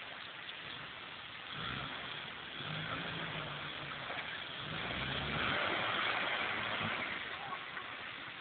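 Suzuki Vitara 4x4's engine revving in several rises and falls as it drives off-road up a rocky quarry slope, coming in about a second and a half in, over a steady hiss.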